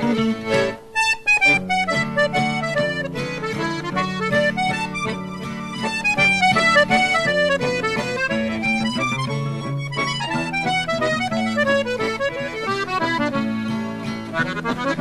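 Button accordion playing a fast melody of quick note runs, with acoustic guitar accompaniment; the music breaks briefly about a second in.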